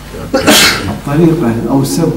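A man speaking, most likely the lecturer in Arabic over a microphone, with a sharp hissing burst about half a second in.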